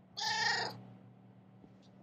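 A tabby cat meows once, a short call of about half a second.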